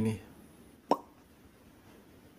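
A single short pop, falling quickly in pitch, about a second in, against quiet room tone.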